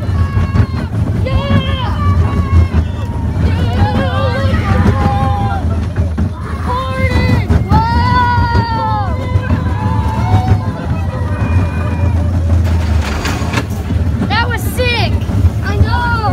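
Riders on a small family roller coaster screaming several times in high, drawn-out cries, over the steady low rumble of the coaster train running along its track.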